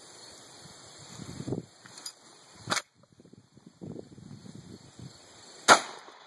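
A UTAS UTS-15 bullpup 12-gauge pump shotgun fired twice, about three seconds apart: a sharp report near the middle and a louder shot near the end. There is faint handling rustle between them.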